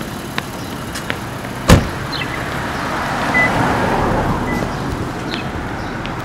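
City street traffic sound. A single loud thump comes just under two seconds in, then the noise of a passing car swells and fades.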